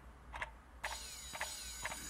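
Faint clicks, roughly two a second, over a low hum and a faint hiss.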